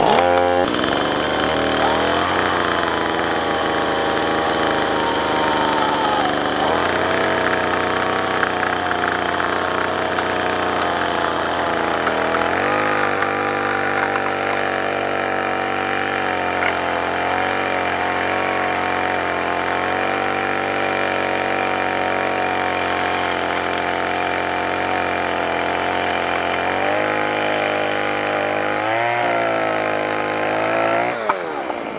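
Stihl chainsaw cutting through a reclaimed barn-wood beam at steady throttle, the chain eased through without forcing. The engine note holds even through the cut and rises near the end as the saw comes through the wood.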